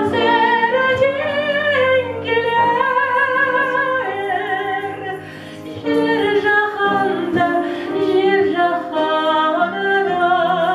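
A woman singing through a handheld microphone, accompanied by a grand piano. She holds long notes with a wide vibrato, and there is a short quieter break about halfway through before the voice comes back in.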